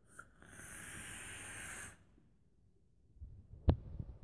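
A long draw through a vape atomizer on a mechanical mod: a steady airy hiss lasting about a second and a half. After a short pause there is a sharp click near the end.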